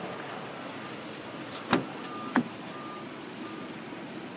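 Steady noise of queued road traffic, with two sharp knocks about two-thirds of a second apart near the middle. A faint high beep repeats three times in the second half, about once every 0.7 seconds, like a reversing or warning beeper.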